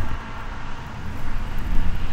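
Outdoor street ambience by a road: a low, fluctuating rumble with a steady hiss above it.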